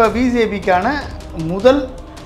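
A man speaking, with nothing else to be heard.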